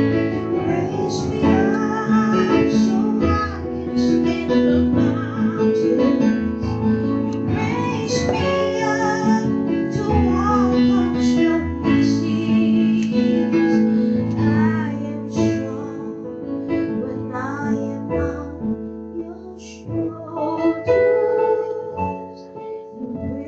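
Live piano accompanying a woman singing a slow ballad, her held notes wavering with vibrato; the music softens for a few seconds before swelling again near the end.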